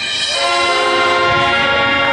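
Marching band playing loud sustained chords, swelling up over the first half-second and then held, the chord changing twice.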